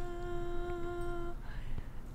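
A person humming one steady held note, as if thinking it over, that stops about a second and a half in.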